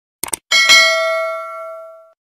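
Subscribe-button sound effect: a quick mouse double-click, then a bright bell ding, struck twice in quick succession, that rings out and fades away over about a second and a half.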